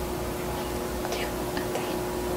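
A quiet room with a steady hum and faint whispering or soft giggling.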